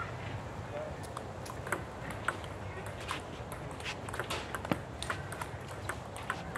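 Table tennis balls clicking off bats and tables in scattered, irregular taps over a steady outdoor background.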